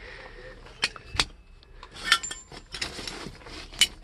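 Metal seat-belt buckles and small loose metal parts clinking as they are picked up and handled on a car seat: a handful of short, sharp clicks spread through the few seconds.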